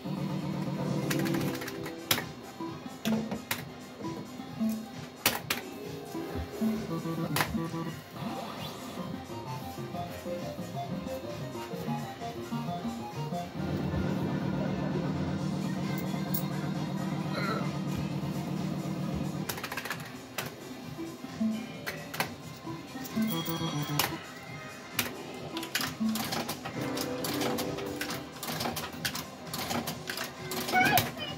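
Cloud 999 fruit machine in play: its reels spin and stop with repeated clicks, and its electronic jingles and runs of beeps sound as wins are added to the bank. A steady low tone holds for about six seconds in the middle.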